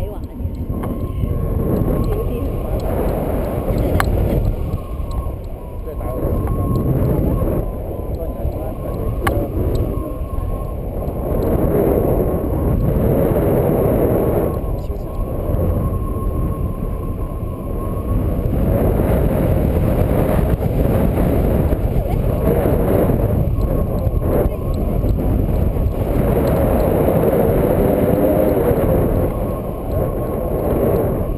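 Wind rushing over the microphone of a pole-held camera on a paraglider in flight: a loud, low rumbling rush that swells and eases.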